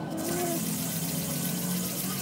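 Aluminium bicycle headset crown race rubbed back and forth by hand on sandpaper laid flat on a table: a steady gritty scraping, as the ring is sanded down to fit the fork.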